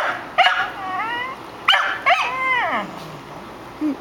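Scottish terrier barking: two bouts of high-pitched, drawn-out barks and yips, the first about half a second in and the second about two seconds in.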